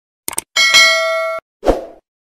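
Subscribe-animation sound effects: a quick double mouse click, then a bright notification-bell ding that rings for under a second and cuts off sharply, followed by a short thud near the end.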